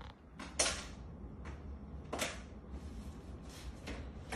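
Plastic bowls and containers scraped and dragged across a kitchen countertop by a dog pawing at them: a string of short scrapes, about one a second.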